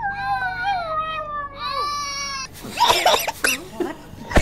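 A baby crying while a small shaggy dog howls along in long, wavering calls that slide down in pitch. About two and a half seconds in, the calls cut off and are replaced by voices.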